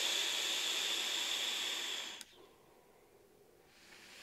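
Direct-lung draw on a CoilArt Mage sub-ohm tank with a 0.2-ohm mesh coil firing on a box mod: a steady airflow hiss with a faint high whistle, which stops abruptly about two seconds in.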